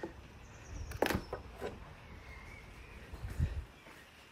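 Handling sounds on a convertible's rear deck and soft-top cover: a sharp click about a second in, a few light ticks, and a dull thump near the end.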